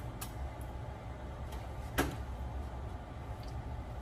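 Steady low kitchen hum with a few faint clicks, and one sharp click about two seconds in.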